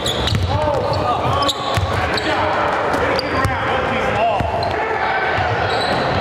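Live court sound of a basketball game: sneakers squeaking on the hardwood floor and the ball bouncing, with players' and spectators' voices in the gym.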